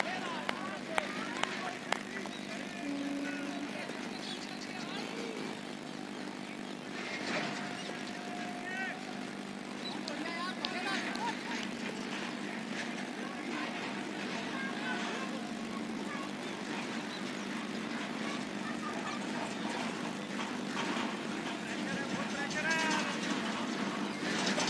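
Outdoor ambience on a cricket field: scattered distant calls and chatter from the players over a steady low hum like far-off traffic. There are a few sharp clicks in the first two seconds.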